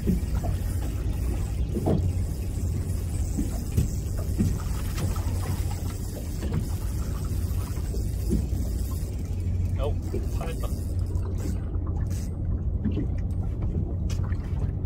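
A 200 hp outboard motor idling with a steady low hum, with wind and water noise over it.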